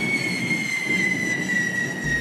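Hand-held firework fountains (carretilles) on devils' forks spraying sparks: a steady rushing hiss with a thin high whistle that slowly falls in pitch.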